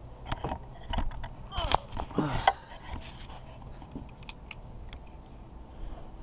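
Handling knocks and scrapes of a person getting down onto the ground to go under a truck, with a couple of short voiced sounds about two seconds in. It goes quieter after about three seconds.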